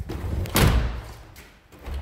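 A balcony door that won't stay open swinging shut: a sharp knock right at the start, then a heavy thud about half a second in that dies away within about half a second.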